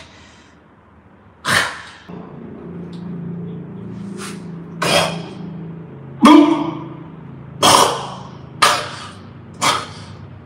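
A series of about seven sharp knocks or taps at irregular intervals, the loudest a little past the middle, over a low steady hum that sets in about two seconds in.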